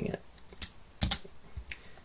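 A few separate keystrokes on a computer keyboard, single clicks about half a second apart, including a Ctrl+C that interrupts the running Python command.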